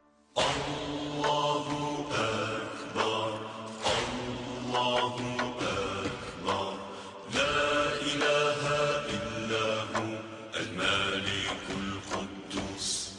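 Islamic devotional chanting: a voice sings drawn-out, wavering phrases, starting about half a second in after a brief silence.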